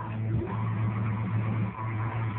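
Loud dance music played over loudspeakers, heard as a rough, noisy wash with a strong steady bass note.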